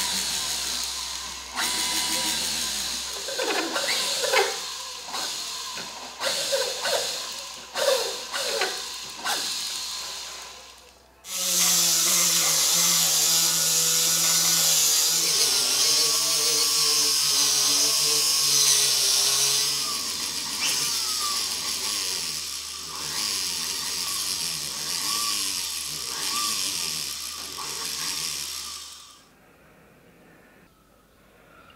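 A jeweller's rotary handpiece with a small burr running against 18K gold, its motor speed rising and falling in short spurts for the first several seconds. About eleven seconds in it stops briefly, then runs steadily at high speed with a high-pitched whine. It stops shortly before the end.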